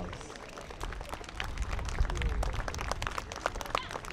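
Crowd applauding: many scattered hand claps at once, not in time with each other.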